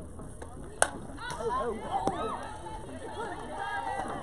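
A softball bat strikes the ball with one sharp crack about a second in, followed by several high voices shouting and yelling.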